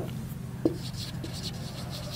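Marker pen writing on a whiteboard: faint strokes as the letters are written, over a steady low hum.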